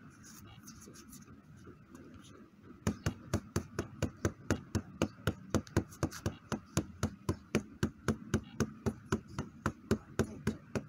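Gloveless punches landing on a hand-held strike pad, starting about three seconds in as a fast, even run of about four to five slaps a second.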